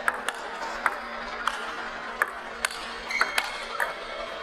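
Table tennis ball clicking sharply off bats and table in a fast rally, about nine hits at uneven spacing, over a faint steady hum.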